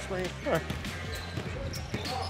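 A basketball bouncing on a gym floor, a few sharp thuds, with short shouted voices from the court.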